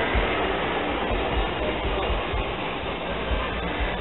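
Steady outdoor street background noise: an even hiss with a low rumble, with no distinct event standing out.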